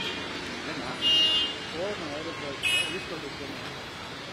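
Street ambience with faint background voices, broken by two short high-pitched toots: a louder one about a second in and a shorter one a second and a half later.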